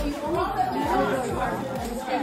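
Indistinct chatter of several teenagers talking over one another.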